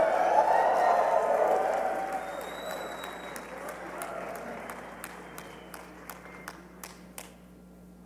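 Large audience applauding, loudest at the start and dying away over several seconds, with a few scattered claps near the end.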